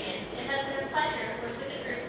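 A woman speaking into a microphone over a hall's PA system.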